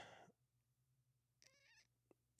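Near silence with faint room hum, broken about one and a half seconds in by a brief, faint, wavering high-pitched sound.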